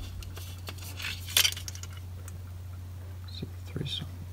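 Light metallic clinks and handling noises from a metal camping-stove heater assembly being turned over in the hand, with one sharper clink about a second and a half in.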